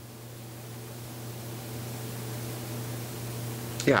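Steady hiss of room noise with a low electrical hum, slowly growing louder.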